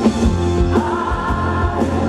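Live rock band playing through a PA: lead vocal with a female backing vocal over electric guitar, bass, keyboards and a steady drum beat.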